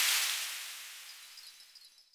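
A title-card sound effect: a hissing whoosh that fades away over about two seconds, with a faint high shimmer of chime-like tones near the end.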